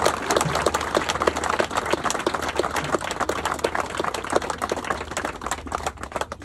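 Audience applauding a speech's close: many hands clapping in a dense, uneven patter that thins out near the end.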